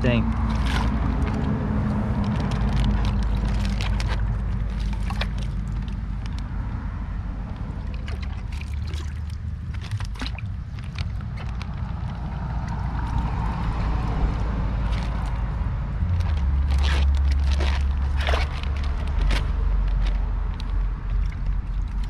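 Water sloshing in a plastic bag and the bag crinkling in the hands as fish and water are packed into it, with scattered sharp crackles. A steady low rumble of wind on the microphone runs underneath.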